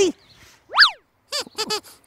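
A comedy sound effect about a second in: one quick whoop that glides steeply up in pitch and straight back down, a cartoon boing for a jump. A high, squeaky voice chatters after it.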